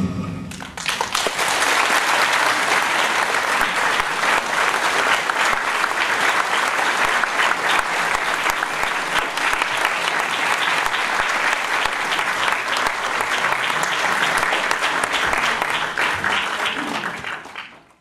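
Audience applause: dense, steady clapping that starts about half a second in and fades out near the end.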